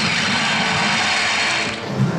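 DARTSLIVE soft-tip dart machine playing its hat-trick award effect, a loud, steady rushing noise that stops near the end. The award marks three bulls in one round.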